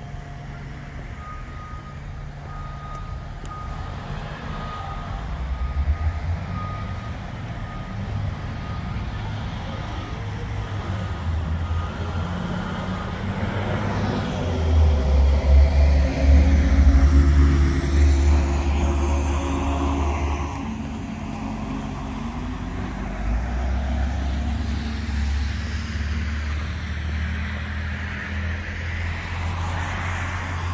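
Road traffic on wet pavement: a heavy vehicle's engine rumble swells loud in the middle and fades, and cars keep passing after it. A high, steady repeating beep, like a reversing alarm, sounds through the first dozen seconds.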